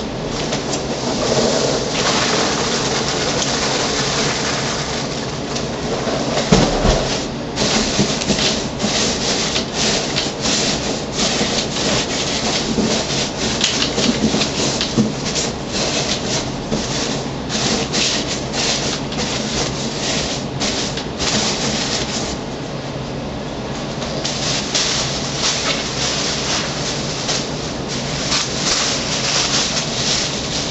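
Spray foam hissing from an aerosol can as it is dispensed into gaps around a packed machine. It runs steadily for the first few seconds, then comes in rapid sputtering spurts with a short pause about two-thirds of the way through, and runs steadily again near the end.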